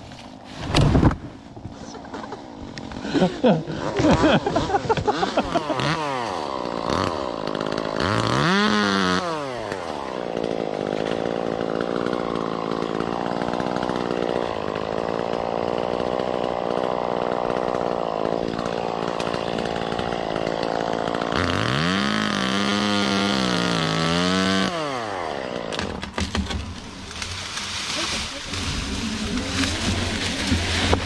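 A chainsaw revving up and back down, then held running at a steady high speed for a long stretch, revved up and down again, then winding down near the end. A few loud knocks come in the first second or so.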